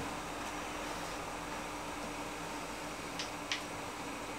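Steady low hum and hiss of room background noise, with two faint short clicks a little past three seconds in.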